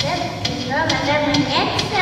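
Backing track of a children's song playing between sung lines: gliding pitched tones over light tapping percussion.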